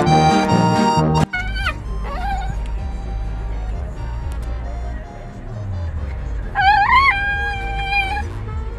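Accordion music for about the first second, cut off suddenly. Then a miniature dachshund whines in a car over a low rumble: a short whine just after the cut, and a longer one near the end that rises and then holds steady.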